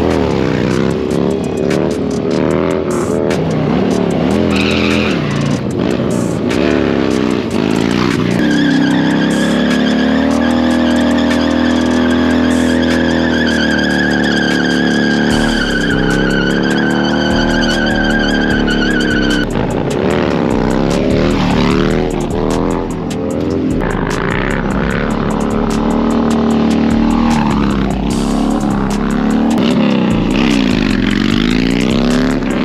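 Harley-Davidson V-twin motorcycles revving hard and accelerating past, the pitch climbing and dropping through the gears. From about eight seconds in, for roughly ten seconds, an engine holds high revs under a steady high squeal, a rear tire spinning and smoking on the asphalt.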